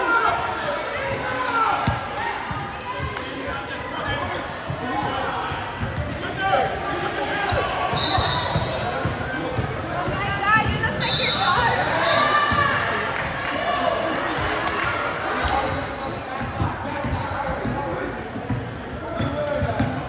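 Basketball dribbled on a hardwood gym floor during a game, with short high sneaker squeaks and players and spectators calling out indistinctly, echoing in a large gym.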